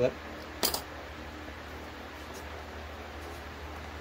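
A single sharp click about two thirds of a second in as the binder clip pinching the ink supply hoses is released, over a low steady hum.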